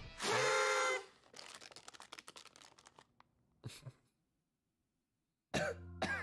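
A man's staged, sickly cough and groan starts abruptly near the end, after about a second and a half of silence. Near the start there is a loud, brief pitched sound lasting under a second, followed by faint crackling clicks that die away.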